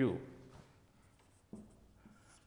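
A marker writing on a whiteboard: faint short strokes, the clearest about one and a half seconds in.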